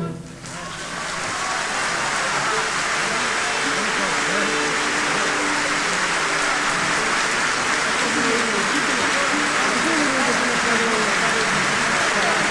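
Theatre audience applauding steadily, with some voices mixed in, rising within the first second or two after the orchestra stops.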